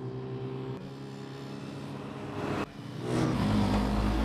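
Engines of a semi-truck and two Suzuki DR650SE single-cylinder dual-sport motorcycles running at road speed: a steady engine drone that turns suddenly louder, with more low rumble, a little past halfway.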